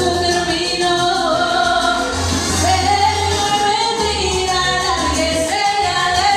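A woman singing karaoke into a microphone over a recorded backing track with a steady bass line, holding some long notes.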